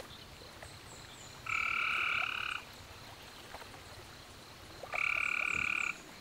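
Frog calling twice, each call a steady note about a second long, over faint high chirping in the background.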